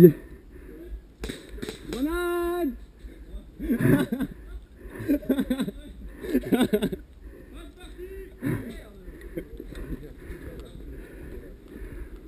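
Men's voices further off, calling and talking in short bursts, with one long held shout about two seconds in.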